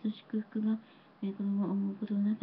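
A woman praying aloud in Japanese into a handheld microphone, speaking in short phrases with a brief pause about halfway through.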